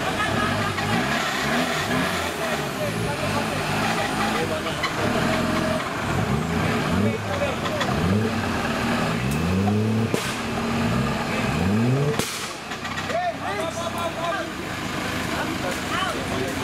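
An off-road 4x4's engine is revved again and again, rising in pitch in short pushes about once a second. About twelve seconds in the revving stops, and voices follow.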